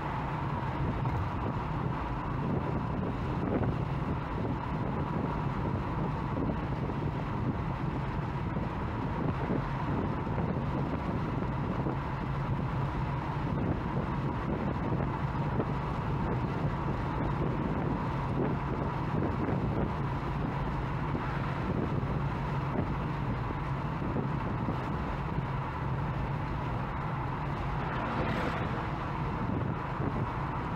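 Steady car cabin noise at motorway speed: an even low rumble of tyres and engine with wind, and a faint constant whine above it.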